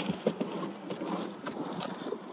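Car cabin noise as the car reverses slowly, with scattered light clicks and taps at irregular intervals.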